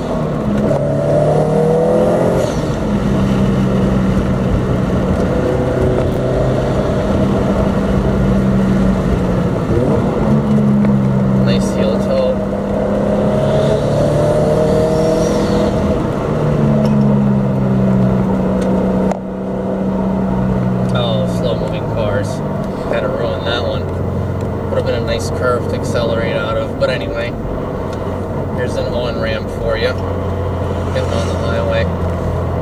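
Turbocharged 2.5-litre flat-four of a 2013 Subaru WRX STI through a Milltek cat-back exhaust, heard from inside the cabin. It accelerates through the gears, its pitch climbing and then dropping back at each upshift. After about twenty seconds it settles into a steady low drone.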